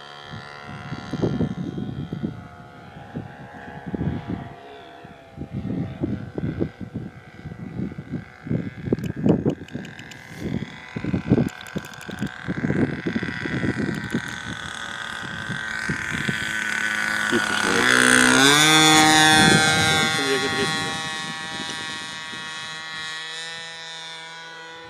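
Petrol engine of a radio-controlled Beagle B121 scale model plane droning steadily in flight. It grows much louder and rises in pitch as the plane comes in on a pass about 18 seconds in, then fades with its pitch dropping as it flies away.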